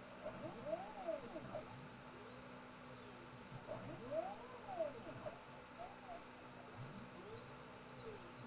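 Stepper motors of a QueenBee CNC router whining as they move the gantry through automatic probing moves: three moves, each a whine that rises and then falls in pitch as the machine speeds up and slows down. A faint steady hum runs underneath.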